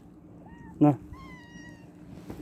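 Ginger-and-white domestic cat meowing: one high-pitched meow a little under a second long, starting about a second in.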